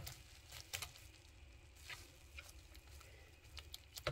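Wire whisk beating batter in a plastic bowl: faint, irregular clicks and taps of the wires against the bowl.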